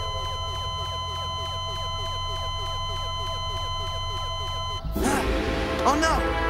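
Electronic sci-fi computer soundtrack: a rapid, even run of falling chirps over steady tones and a low hum. Near the end it cuts off abruptly into a louder, noisy passage with rising-and-falling electronic zaps.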